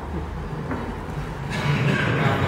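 Indistinct murmur of many voices in a large hall, swelling louder about a second and a half in.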